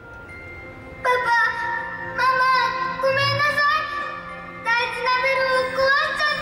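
A high solo voice sings a slow melody in phrases over soft instrumental accompaniment. It enters about a second in, after a soft held note.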